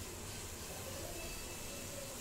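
Faint, steady hiss of chopped green beans cooking in a stainless-steel pot over a gas flame turned down to simmer, with the beans being stirred with a wooden spatula.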